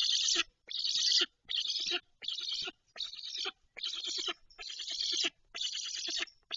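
Black stork nestling giving rhythmic rasping, hissing calls, one short burst about every three-quarters of a second.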